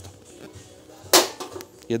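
Hand-squeezed sheet-metal hole punch (a combined flanging and punching plier) punching through fairly thick steel sheet: one sharp metallic snap about a second in, followed by a faint click as the jaws let go.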